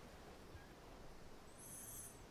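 Near silence: faint room tone, with a brief faint high hiss near the end.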